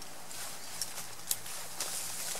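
Handling noise while rigging a tarp with cord: a few light, scattered clicks and knocks over faint rustling and footsteps on forest ground.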